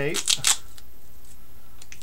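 Duct tape being handled and pressed down onto foil-covered glass: a few short crackling clicks in the first half-second, then only faint clicks near the end over a low background hum.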